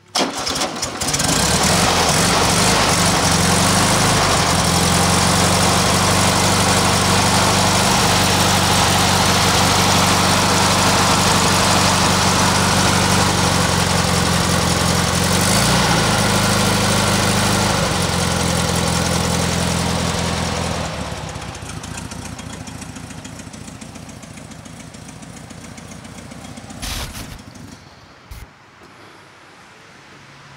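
A 1980 Volkswagen Beetle (Fusca) 1300's air-cooled flat-four engine starts with an uneven first second, then runs steadily, with a brief dip and rise in engine speed about midway. The engine sound drops away about two-thirds of the way in, leaving fainter noise and a couple of clicks near the end.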